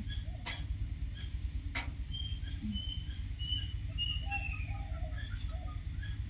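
Quiet night ambience: a low steady rumble with a thin steady high whine, a few short faint chirps in the middle, and a couple of soft clicks.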